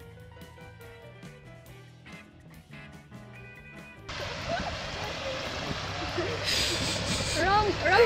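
Background music until about four seconds in, when it cuts suddenly to the steady rush of water pouring over a curved concrete dam spillway. Voices begin near the end.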